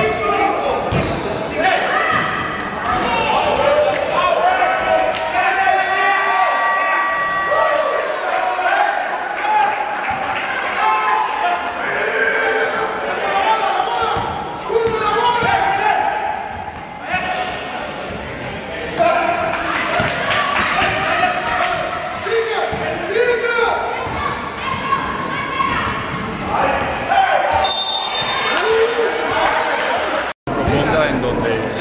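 Basketball game in an echoing gym: the ball bouncing on the hardwood court, with players and spectators calling out.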